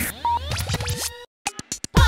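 Radio-show transition jingle: electronic sweeping glides and short beeps, then a quick stutter of record-scratch clicks leading into a dance-music beat.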